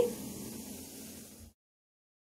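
A faint, even hiss that cuts off abruptly to dead silence about a second and a half in.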